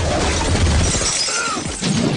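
Film sound effects of an explosion's aftermath: a loud crash of shattering, breaking debris over dense noise, with a low rumble that drops away under a second in.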